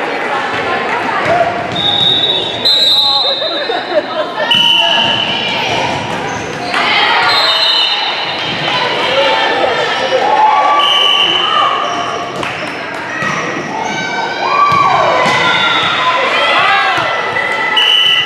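Volleyball rally in a gym: the ball thudding off players' arms and hands, short high-pitched sneaker squeaks on the hardwood floor, and players and spectators calling out and shouting, all echoing in the hall.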